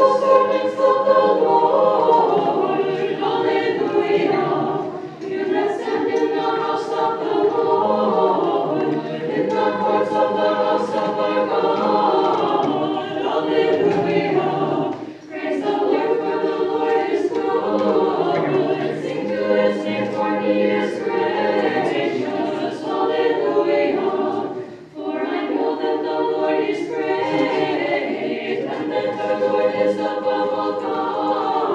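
An unaccompanied choir singing Orthodox liturgical chant, phrase after phrase, with brief breaks about every ten seconds.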